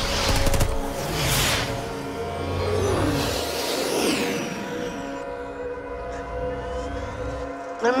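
Film score music holding steady chords over a low rumble, with rushing whooshes of vehicles passing about a second and a half in and again around three to four seconds in. The rumble drops out shortly before the end.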